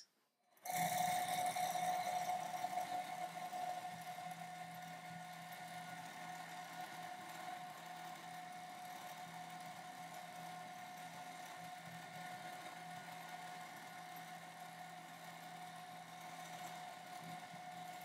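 Juki sewing machine running steadily during free motion quilting, its motor humming at a constant pitch. It starts about half a second in and is louder for the first few seconds, then quieter.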